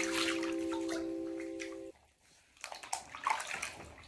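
A held chord of background music fades and cuts off about two seconds in. Then bathwater splashes and sloshes in short, scattered bursts as a person washes in the tub.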